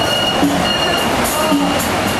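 Loud steady street noise, with a short low two-note sound repeating about once a second.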